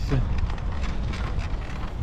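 Low, steady rumble of a baby stroller's wheels rolling over a paving-stone path.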